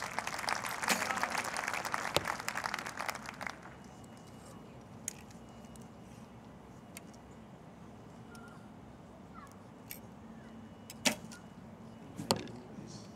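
Spectators clapping for an arrow scored a ten, dense applause lasting about three and a half seconds and then dying away. Quiet open-air background follows, with a few sharp clicks, the loudest near the end.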